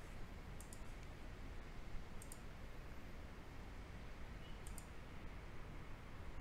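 Computer mouse clicking, faint: three clicks, each a quick pair of ticks, spaced a couple of seconds apart, over steady low room noise.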